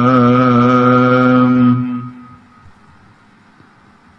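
A man's voice chanting Sikh scripture (Gurbani), holding one long note that fades out about two seconds in, then a pause.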